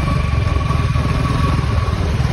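Royal Enfield Bullet single-cylinder motorcycle running steadily under way: a dense, low exhaust beat, with a thin steady whine above it.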